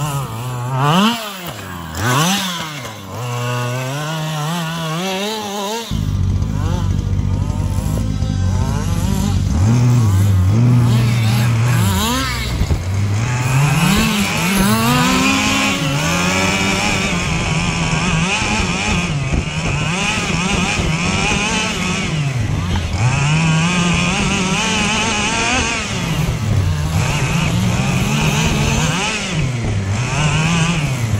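Small two-stroke petrol engine of an FG Marder RC buggy (25cc), revving up and dropping back again and again as the buggy is driven round the track. About six seconds in the sound gets louder and fuller.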